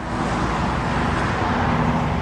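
The Escalade's 6.0-liter Vortec V8 idling with a steady low rumble, over a hiss of background traffic.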